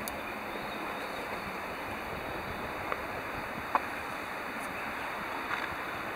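Steady outdoor rushing noise, with a few short clicks about three and four seconds in.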